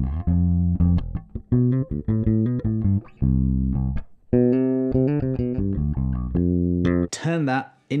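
Four-string electric bass guitar played fingerstyle: a run of separate sustained notes, a short phrase built on an arpeggio and scale idea, with a brief lull about three seconds in. The playing stops near the end and a man's voice takes over.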